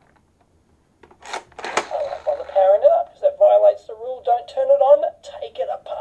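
Two clicks from a modified See 'n Say toy's dial mechanism, then a recorded voice clip played by its Arduino microSD sound player through the toy's small built-in speaker, thin and without bass.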